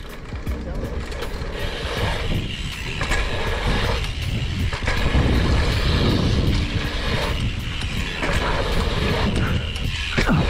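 A BMX bike ridden fast over a dirt jump line: wind rushing over a bike-mounted microphone and tyres rolling on packed dirt, with faint, regular ticking from the bike.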